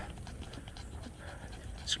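Quiet, rapid panting breaths in the heat.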